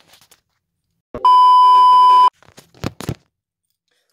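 One loud, steady electronic beep, a single held tone lasting about a second, with a knock just before it and a few sharp handling clicks about a second after it.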